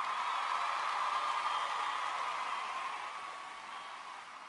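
A steady hiss like static, strongest in a mid-pitched band, slowly fading over the few seconds.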